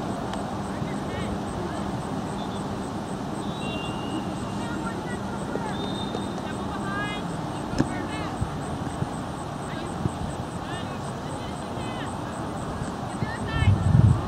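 Distant voices from players and spectators across an open field, over a steady low drone that stops about halfway through. A few faint knocks are heard, and wind rumbles on the microphone near the end.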